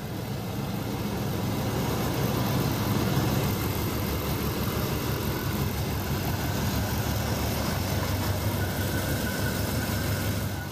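Oldsmobile Rocket 350 V8 with dual exhaust idling steadily, an even low rumble; the engine has recently been fitted with new cylinder heads.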